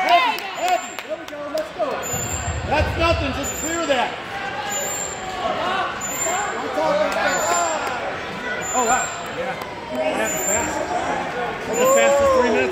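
Indistinct overlapping voices of spectators and coaches talking and calling out in the background, with a brief low rumble between about two and four seconds in.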